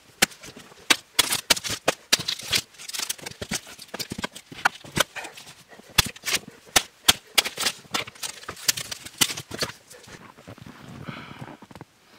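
Hatchet blows chopping and splitting long wooden slabs: a quick, irregular run of sharp knocks and wood cracking, easing off near the end.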